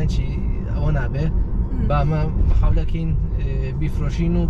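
A person's voice inside a moving car's cabin, coming and going in short phrases over a steady low rumble of road and cabin noise.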